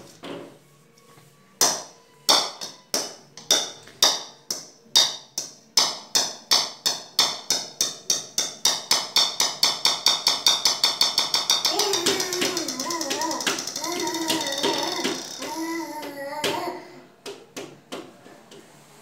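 A run of sharp taps, slow at first and speeding up steadily until they blur together after about ten seconds. Then a baby's voice for a few seconds near the end.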